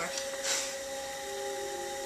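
Electric potter's wheel running with a steady motor whine, with the light scrape of a trimming tool on the spinning leather-hard cup. A short hiss about half a second in.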